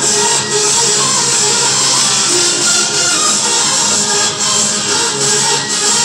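Upbeat J-pop idol song played loudly over a hall sound system, in an instrumental passage with no singing.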